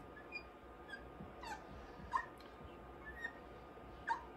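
Dry-erase marker squeaking in short, faint chirps as numbers and a division bracket are written on a whiteboard.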